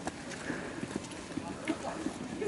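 Footsteps of a group of people climbing a rocky path and stone steps: irregular scuffs and knocks of shoes on rock, with voices of the crowd murmuring under them.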